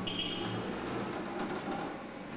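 Forklift engine running with a low, steady hum that fades about half a second in, with a short higher-pitched hiss at the start.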